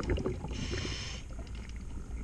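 Scuba diver breathing through a regulator underwater: the bubbling of an exhale dies away, then a short hissing inhale follows about half a second in.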